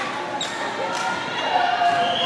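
Spectators' voices and calls in a gymnasium, with a brief high falling squeak about half a second in.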